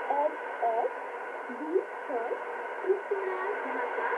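Shortwave AM broadcast on 5845 kHz of a voice speaking in Bengali, played through a Yaesu FRG-100 communications receiver: thin audio cut off above and below, over a steady hiss with faint steady whistling tones.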